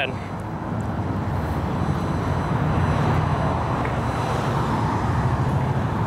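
Road traffic noise, a steady rumble and tyre hiss of passing vehicles that swells around the middle and eases toward the end.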